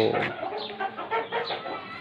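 Chickens clucking in short, repeated calls.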